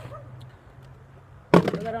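A cardboard box put down on the ground with one sharp thunk about one and a half seconds in, after a quiet stretch.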